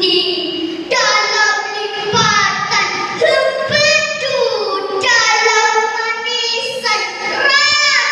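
A girl declaiming a Malay poem in a chanted, half-sung delivery, her voice held and drawn out in long phrases that slide in pitch, with short pauses between them.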